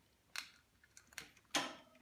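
A few faint clicks from a Eurorack patch cable being handled and plugged into a module jack, with a brief rustle near the end.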